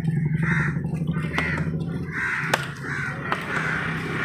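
Crows cawing over and over, with a few sharp knife chops on a wooden block in the second half and a low steady hum underneath.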